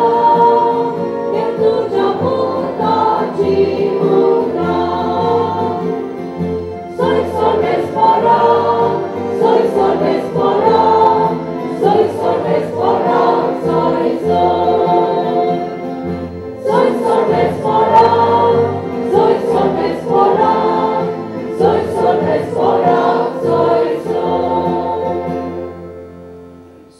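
A church choir singing a hymn through microphones over a steady low instrumental accompaniment, in three long phrases with short breaks between them.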